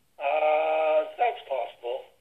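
A man's voice over a telephone line, holding one long drawn-out sung or hummed note for nearly a second, then a few short syllables.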